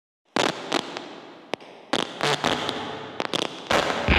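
Irregular series of about ten sharp bangs and slaps echoing in a large hall: wrestlers hitting the ring mat during training.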